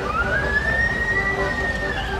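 A single high siren-like tone that glides up over about half a second, holds steady, and starts to fall near the end.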